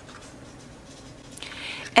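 Faint rustling and brushing of cardstock index cards being handled and laid down, a little louder just before the end.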